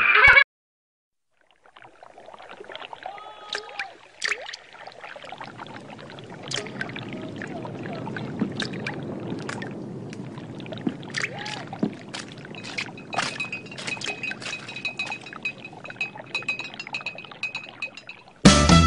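Faint rustling, clattering noise with many scattered sharp clicks and clinks, and a thin steady high tone coming in during the second half.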